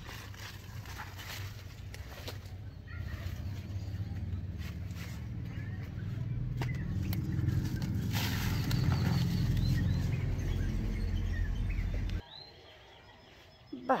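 Weeds being pulled up by hand, leaves rustling and stems crackling, with a low rumble on the microphone that grows louder and cuts off suddenly about twelve seconds in.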